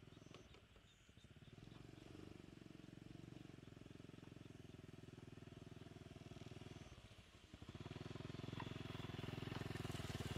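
Small motorcycle engine running, briefly easing off about seven seconds in, then getting louder as it approaches along the track.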